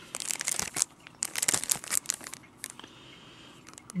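Thin clear plastic crinkling around a trading card as it is handled and worked loose, in quick irregular crackles through most of the first three seconds.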